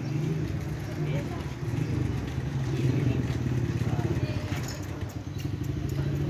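A motorcycle engine idling steadily with a low, rapidly pulsing hum, with voices of people around it.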